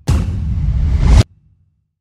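A loud whoosh sound effect for an animated logo, swelling and then cutting off suddenly a little over a second in.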